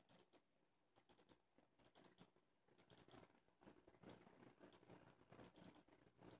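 Faint, scattered computer mouse clicks, a dozen or so at irregular intervals, the loudest about four seconds in, with near silence between them.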